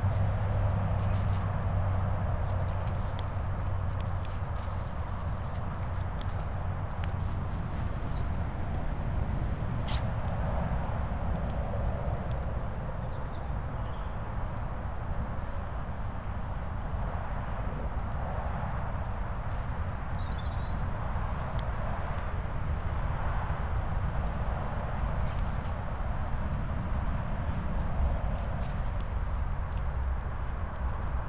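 An English Pointer and a cocker spaniel running and playing on grass: paw thuds and scuffles over a steady low rumble.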